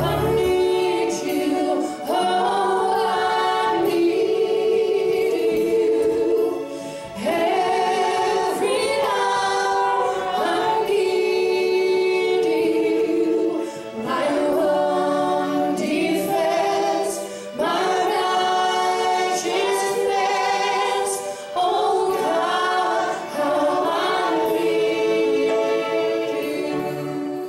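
A choir singing unaccompanied in phrases of about two seconds, with short breaks between them; a low accompaniment cuts off just after the start.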